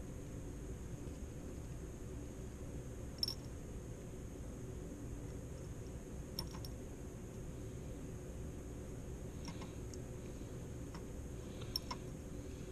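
Steady low hum of a fan or room ventilation. A few faint, light clicks of a glass pipette against glass test tubes come at intervals as Kovac's reagent is dropped in.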